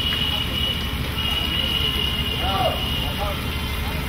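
Steady low rumble of outdoor background noise, with faint voices calling about halfway through.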